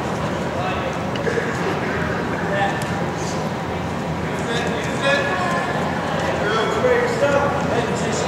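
Indistinct voices calling out and chattering across a gymnasium, with a few short knocks.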